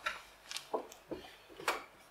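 A handful of soft, separate knocks and taps, about six in two seconds, from the organist moving at the console and settling on the bench before playing.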